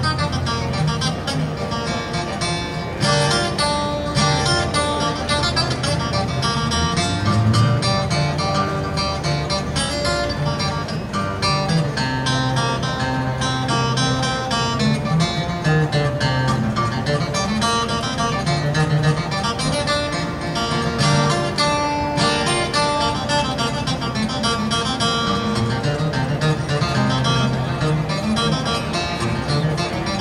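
Two acoustic guitars playing a bluegrass instrumental: a lead guitar picking the melody while a second guitar backs it with strummed rhythm and a moving bass line.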